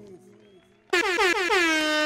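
The music dies away, then about a second in a loud air-horn sound effect blasts in. Its pitch drops steeply and then holds steady, with a fast wobble running under it.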